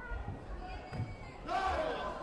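Dull thuds of feet and kicks landing on a padded taekwondo mat and body protectors during sparring, echoing in a large hall. Voices carry throughout, with a loud shout about one and a half seconds in.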